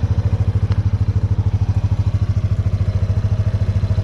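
Single-cylinder four-stroke engine of a 2002 Kawasaki Prairie 300 4x4 ATV idling, a steady, even, fast low pulsing.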